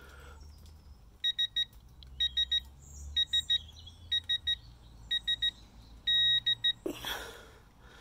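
Digital torque adapter's buzzer beeping in quick triplets about once a second, then one longer beep about six seconds in, as the torque on the lug nut climbs toward its 140 ft-lb setting.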